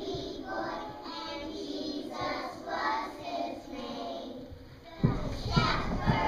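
Young children singing together as a choir. About five seconds in, a sudden louder burst of sound with a low thump cuts in.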